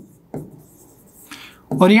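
Marker pen writing on a whiteboard: one sharp stroke about a third of a second in, then lighter scratching as the word is finished.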